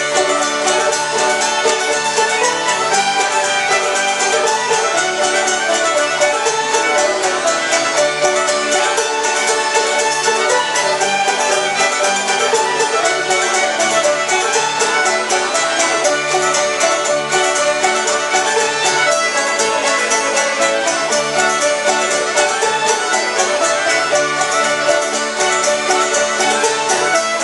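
Old-time string band playing a tune together: several fiddles in unison over banjo and upright bass, with a steady, even rhythm throughout.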